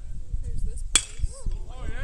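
Baseball bat striking a pitched ball: one sharp crack about a second in, the contact of a home-run swing, followed by spectators starting to shout.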